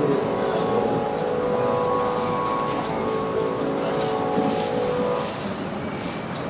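Live Carnatic concert music: long, steadily held melodic notes over a drone, fading a little after five seconds in, with a few faint taps.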